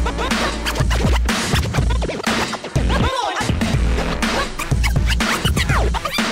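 Turntable scratching over a hip-hop beat with heavy bass. The bass drops out for a moment about halfway through, under a flurry of scratches.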